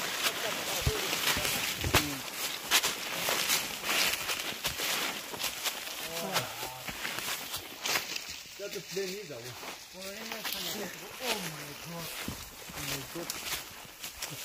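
Dry leaves and twigs crackling and rustling as hikers push through dense brush, with footsteps on leaf litter; the crackling is busiest in the first half. Voices talk briefly in the second half.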